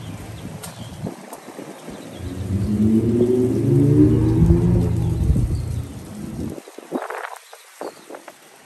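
A loud low rumble that builds from about two seconds in, peaks around the middle and fades out suddenly near the end, with a short higher-pitched noise after it.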